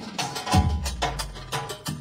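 Live manele band playing an instrumental, carried by quick, evenly spaced hand-drum strokes, with a deep low drum hit about half a second in.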